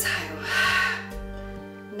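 Soft background music with steady held tones, over which a long breathy exhale rises and fades within the first second, as the stretch is taken on the out-breath.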